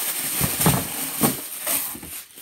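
Tissue paper rustling and crinkling as it is pulled out of a cardboard shoe box, in a steady, irregular rush of noise.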